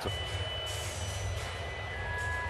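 Ballpark ambience between innings: a steady crowd murmur and a low hum, with a few faint held high tones.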